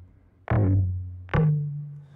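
A looped recording of tom drum hits played back through Ableton Live's Tones warp mode at a grain size of 22. Two hits sound, each a sharp attack dying away in a low pitched ring; the second rings higher.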